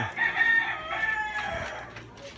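A rooster crowing: one long call of about a second and a half that fades out near the end.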